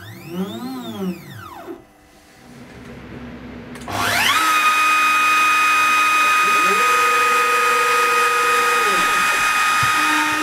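CNC stepper motors whining in a pitch that rises and then falls over about two seconds as the machine makes a move. About four seconds in, the compact trim router used as the spindle starts and spins up within half a second to a loud, steady high whine for the test cut. Near the end, a lower motor tone under it ramps up, holds for about two seconds and ramps down as an axis moves.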